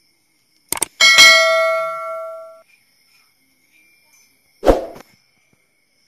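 Subscribe-button sound effect: a quick double click, then a bright bell ding that rings out for about a second and a half. A single dull thump comes near the end.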